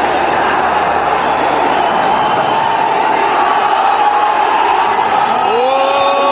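Large stadium crowd cheering in a continuous, dense wall of voices, with drawn-out shouts inside it. Near the end a single loud held note rises above the crowd.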